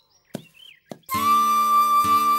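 Background score comes in about a second in: a single held, flute-like high note over a steady low drone. Before it there are only a few faint short ticks and a brief bird-like chirp.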